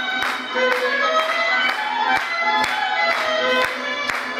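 Violin-led Cypriot folk dance music for the sousta, with a steady beat about twice a second.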